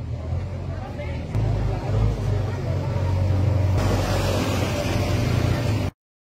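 Steady low rumbling background noise with indistinct voices, growing fuller and hissier partway through, then cutting off abruptly just before the end.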